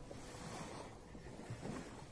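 Faint seaside ambience: wind on the microphone and small waves on a pebble shore, with a faint low thump about one and a half seconds in.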